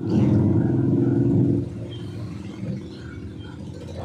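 A low rumble, loud for about the first second and a half and then settling to a steadier, quieter level.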